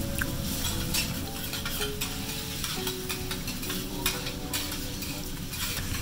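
Food sizzling on a steel teppanyaki griddle while a metal spatula scrapes and taps across the hot plate, giving a steady frying hiss broken by sharp clicks every second or so.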